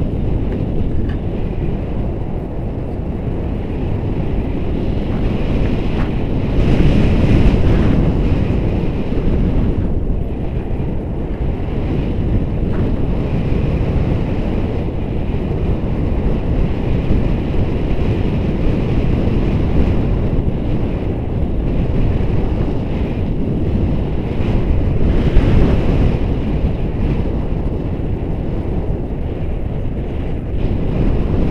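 Wind from the flight's airspeed rushing over a handheld camera's microphone during a tandem paraglider flight: a loud, steady rush strongest in the low end. It swells about seven seconds in and again near twenty-five seconds.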